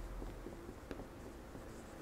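Faint sound of a marker pen writing on a whiteboard, with a light tap a little before the middle.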